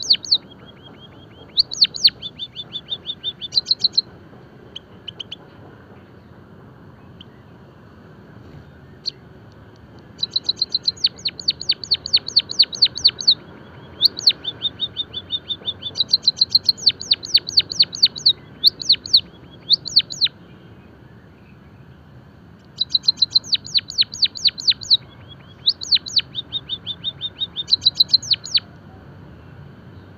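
White-headed munia singing in bouts of rapid, high, clicking notes that sweep down, about eight a second. Each bout lasts a few seconds, with pauses between them; the longest pause runs from about five to ten seconds in.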